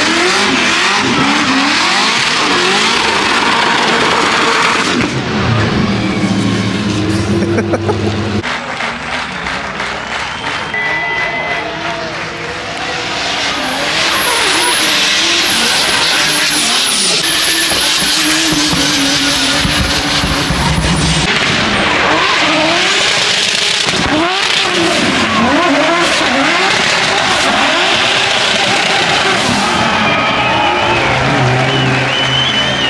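Drift cars sliding sideways at full throttle, their engines revving hard with the pitch swinging up and down under loud, continuous tyre screech. It eases off for a few seconds in the middle, then comes back loud.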